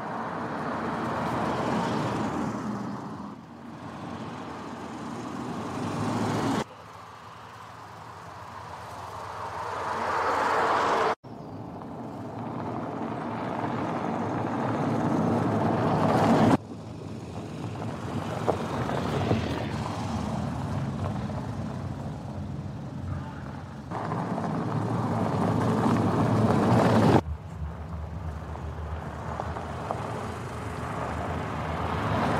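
Škoda Karoq SUV driving by in a string of edited takes: tyre and engine noise swells as the car comes closer, then cuts off suddenly at each edit, several times over.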